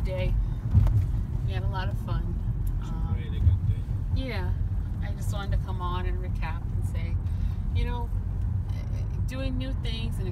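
Steady low rumble of road and engine noise inside a moving car's cabin in traffic, with a couple of louder low bumps about a second in and midway. Quiet, indistinct voices run over it.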